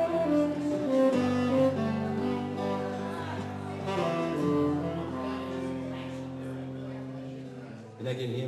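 Live instrumental music from a duo, with held notes that slowly fade away toward the end.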